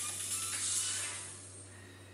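Background music fading out, dying away over the second half.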